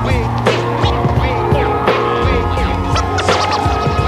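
Hip-hop beat with no vocals: drums, a deep bass line and a held high note, with record-scratch sweeps about every second and a half.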